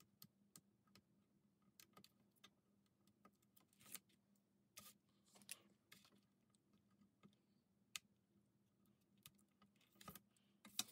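Near silence with faint, scattered ticks and light paper rustles as patterned paper pieces are pressed down onto double-sided tape and nudged with a pointed craft tool, over a faint steady hum.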